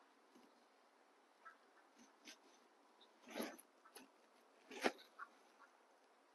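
Baby macaques eating soft fruit: faint scattered wet chewing and smacking clicks, with a short louder burst of sound about three and a half seconds in and a sharp knock, the loudest sound, just before five seconds.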